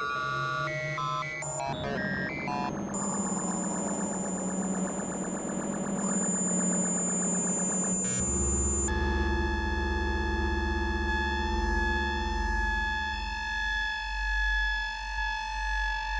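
Experimental electronic noise music from a Buchla synthesizer, electric bass and found radio sounds. Quick stepping synth tones open it, then comes a dense buzzing texture with steady high whistling tones, and from about halfway a deep low drone sits under several held tones until the music stops abruptly at the very end.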